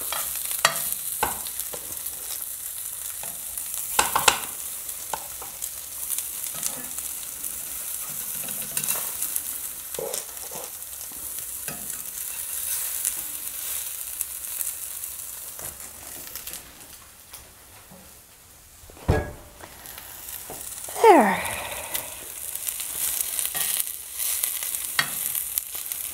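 Sausage patties sizzling in a cast-iron skillet on a wood cook stove, with a metal spatula clicking and scraping against the pan as they are moved and turned. The sizzle dips briefly about two-thirds of the way through, followed by a single loud knock and a short falling squeal.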